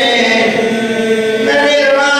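A man chanting a naʿi, an Arabic elegy for Imam Husayn, solo and unaccompanied into a microphone, in long held notes; a new note begins about a second and a half in.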